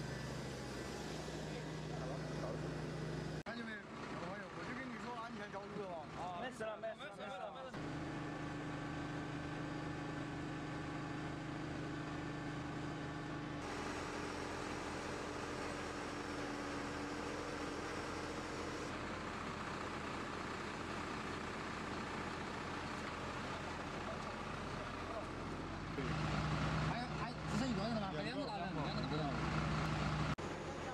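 A heavy vehicle's engine running steadily, a low hum that carries on through several cuts. People talk over it twice, for a few seconds each time.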